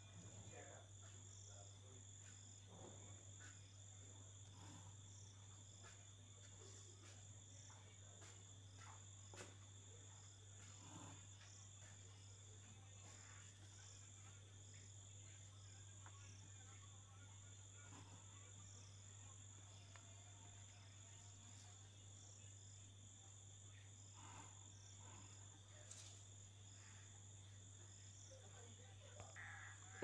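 Near silence: a steady low hum and a faint, steady high-pitched whine, with faint scattered scratches of a pencil drawing lines along a plastic ruler on paper.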